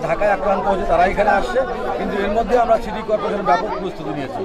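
Only speech: a man speaking Bengali, with other voices murmuring around him.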